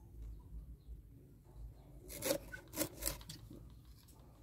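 Knife sawing through a giant orchid (Grammatophyllum speciosum) pseudobulb, a few short faint rasping strokes about two to three seconds in.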